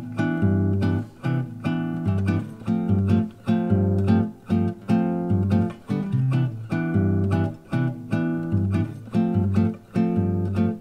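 Acoustic nylon-string classical guitar playing a bossa nova intro alone: rhythmic plucked chords over a moving bass line, with no voice yet.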